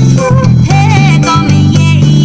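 Bass guitar playing a bass line along with a song that has a singing voice, the low bass notes changing every fraction of a second under the melody.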